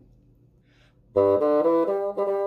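Solo bassoon, unaccompanied, entering suddenly about a second in with a short low pickup note and then a run of quick, detached notes: the opening measures read through plainly, without added accents or style.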